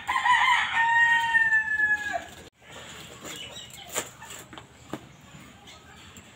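A rooster crowing once, a single long call of a little over two seconds that drops in pitch as it ends. A few faint clicks follow.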